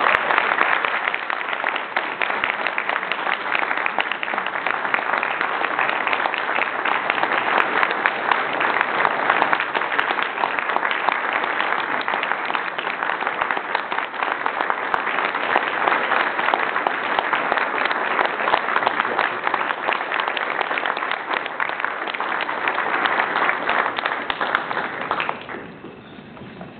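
Large audience applauding steadily for about 25 seconds, dying away near the end.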